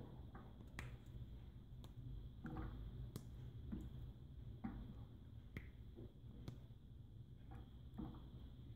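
Pieces of dark chocolate broken off a bar and dropped one by one into milk and cream in a steel saucepan: faint, sharp snaps about once a second.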